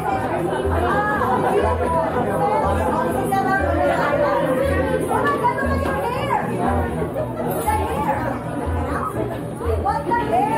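Many people chatting at once over background music with a steady low bass beat about once a second.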